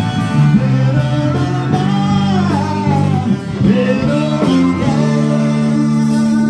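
Small live band playing amplified through PA speakers: guitar with a singer's voice gliding between held notes.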